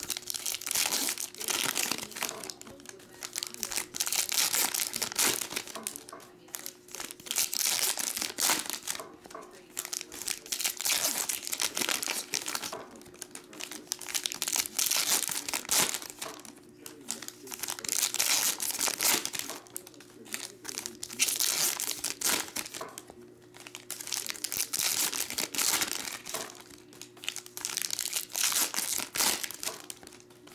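Foil trading-card packs being torn open and crinkled by hand, one after another, in bursts of crinkling a few seconds long with short quieter gaps between.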